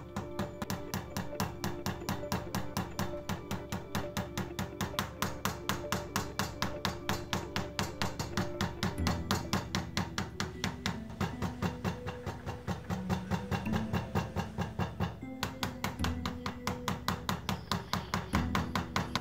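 Background music with changing chords, over a fast, even run of taps from a mallet striking a metal leather-stamping tool (a beveler) being worked along the lines of a carved leather design.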